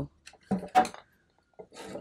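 A woman's voice making one short spoken sound about half a second in, followed by a pause with a few faint taps.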